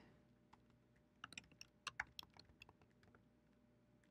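Faint typing on a computer keyboard: a quick run of key clicks between about one and three seconds in, as a single word is typed.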